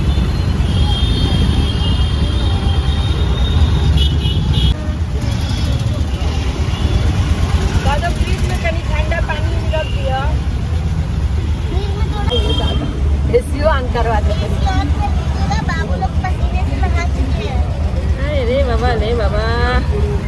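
Auto-rickshaw engine running with a steady low rumble, heard from inside the open-sided cabin while moving through traffic.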